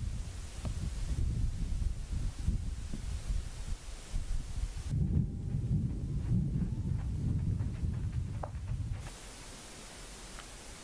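Wind buffeting the microphone outdoors, an uneven low rumble that swells and drops, changing character about halfway through. Near the end it dies down to a quieter steady hiss.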